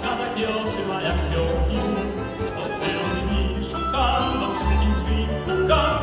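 Live music from a tango quartet of violin, accordion, piano and double bass, with the double bass playing a line of low notes, each about half a second long, under the wavering melody.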